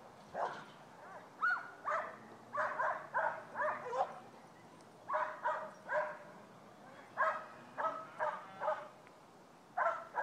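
Herding dog barking repeatedly, in quick runs of two to four barks with short pauses between.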